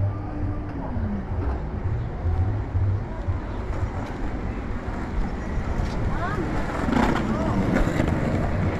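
Pedestrian-street ambience: indistinct voices of passersby over a steady outdoor hum, with a low motor tone that slides down in pitch and fades about a second in.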